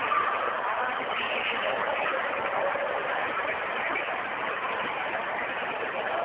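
Steady din of a busy indoor ice rink: a continuous wash of noise with faint, indistinct voices in it.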